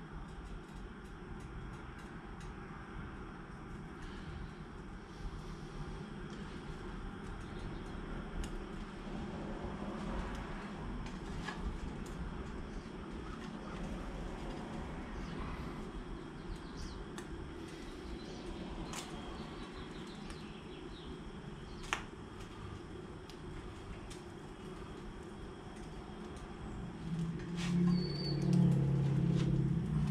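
Small gas canister camp stove burning low under a frying pan with a steady soft hiss, and scattered light clicks of a spatula against the pan. One sharper click comes a little past the middle, and there are louder handling knocks near the end as the food is lifted onto a plate.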